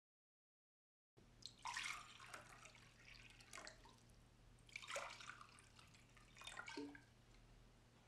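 Faint swishing and dripping of a paintbrush being worked in water, in three or four short strokes starting about a second in.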